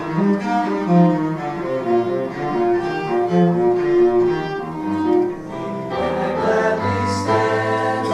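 Violin and cello duet playing a classical piece for about the first five seconds, then after a short break a group of male voices singing together from about six seconds in.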